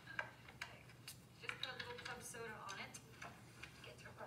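Faint speech with a few sharp ticks in the first second or so, from pottery tools being handled against a leather-hard clay mug.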